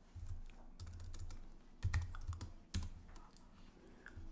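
Typing on a computer keyboard: a run of keystrokes, with two louder key strikes about two seconds in and just before three seconds in.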